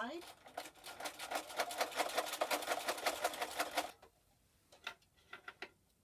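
Electric sewing machine stitching a quarter-inch seam through layers of quilter's cotton and flannel, a rapid, even run of needle strokes that stops a little before four seconds in. A few soft clicks follow near the end as the fabric is handled.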